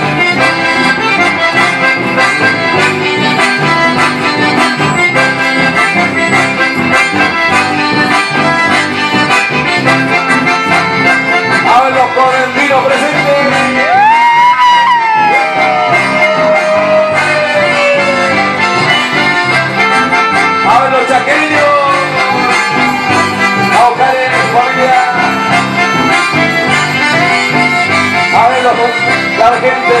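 Live chamamé band playing an instrumental passage, button accordions leading over acoustic guitar and electric bass. About halfway through, a voice lets out a long high cry that rises and then slides down, with shorter cries later.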